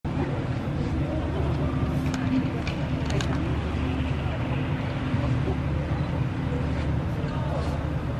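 Steady low engine hum, with faint voices talking in the background.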